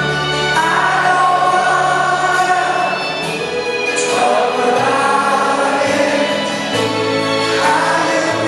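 Live acoustic band music: strummed acoustic guitars, one a twelve-string, over an upright double bass, with sung vocals.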